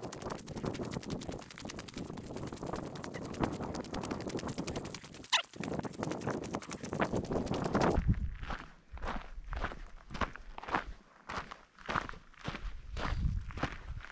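A hiker's footsteps crunching on a loose gravel trail at a steady walking pace, the steps sounding more distinct and separate over the last several seconds.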